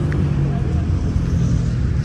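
Steady low outdoor background rumble.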